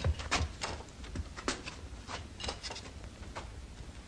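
A scatter of light, irregular knocks and clatter as people sit down at a table: wooden stools and chairs set on a wooden floor, and spoons against soup plates.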